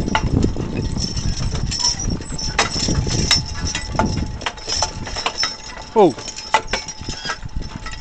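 A team of Belgian draft horses walking in harness over a snowy track: irregular jingling and clinking of harness chains and metal fittings, with hoofbeats and a low wind rumble on the microphone. A person says a short "Oh" about six seconds in.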